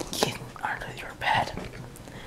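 A person whispering a few short, breathy syllables close to the microphone.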